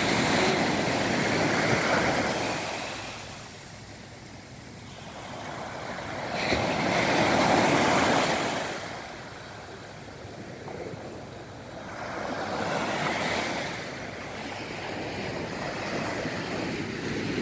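Small sea waves breaking and washing up a sandy beach, the surf swelling and fading three times, loudest about seven or eight seconds in.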